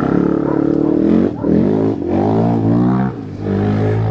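Car engine, the high-revving GTS with a 7500 RPM redline, being revved: the pitch climbs and falls repeatedly, dropping back briefly a few times.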